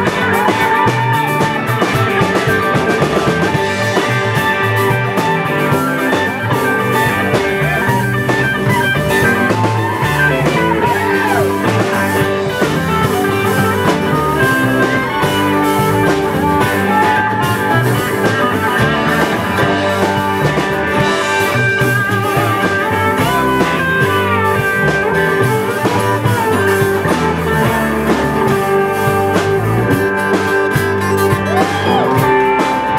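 Live rock band playing an instrumental passage with no singing: electric guitars over a rhythm section, with a lead guitar line bending its notes.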